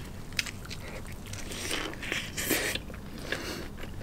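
Close-miked mouth sounds of biting into and chewing soft-bun burgers: small wet clicks and smacks, busiest about two seconds in.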